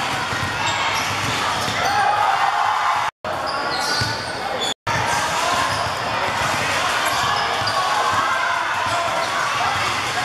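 Basketball game sound in a sports hall: spectators shouting and chattering over a basketball bouncing on the court floor. The sound drops out twice for an instant, about three and five seconds in.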